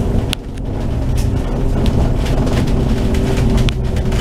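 Cabin noise inside a moving double-decker bus: the engine running steadily under way, with a few short rattles from the bodywork.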